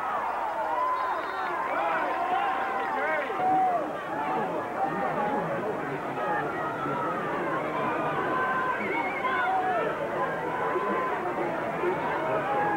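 Spectator crowd at a football game, many voices talking and calling out at once in a steady babble.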